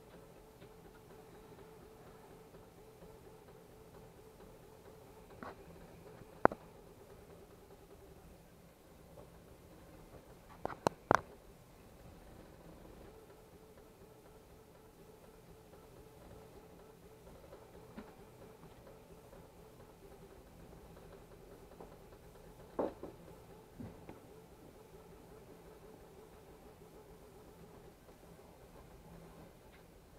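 Lead-screw-driven 3D printer printing fast, at about 200 mm/s: a faint, steady whir from its motion with a wavering mid-pitched hum. A few sharp clicks break in, the loudest about six and eleven seconds in.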